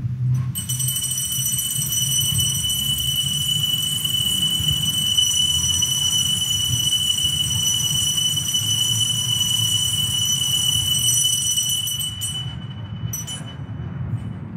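Altar bells rung continuously at the elevation of the chalice after the consecration, a steady high ringing that holds for about eleven seconds and then stops shortly before the end.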